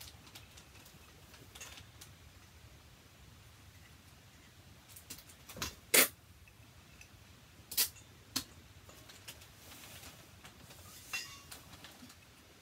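Sticky raisins being broken apart by hand from a glass measuring cup over a stainless steel mixing bowl: mostly quiet, with a handful of sharp clicks and knocks, the loudest about halfway through.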